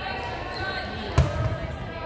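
A volleyball served by hand: one sharp smack about a second in, echoing in a gymnasium, over a background of players' and spectators' voices.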